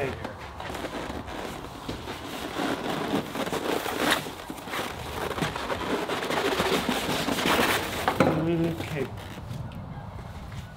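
Cardboard shipping box and styrofoam packing being handled: a dense run of small scrapes, rustles and crackles as the box is worked off the foam-packed pump.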